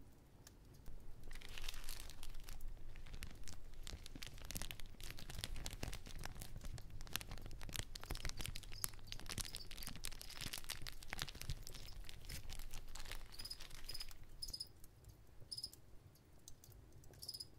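Pen scratching across notebook paper in quick, continuous writing strokes, starting about a second in and easing off near the end. A few short high-pitched chirps come in near the end.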